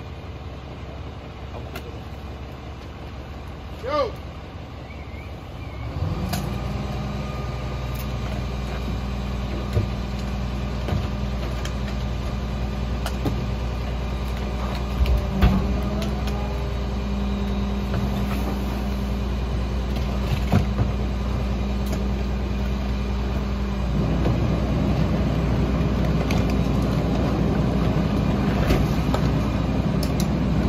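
Rear-loader garbage truck running, its engine stepping up to a higher, steady speed about six seconds in as the packer is put to work, and rising again later on; sharp knocks of carts being banged and emptied into the hopper.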